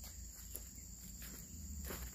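Steady high-pitched insect chorus droning in the oil palm plantation, with a couple of soft footsteps on dry ground.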